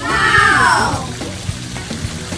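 A loud, high cry that falls steeply in pitch over about a second, over background music with a steady beat.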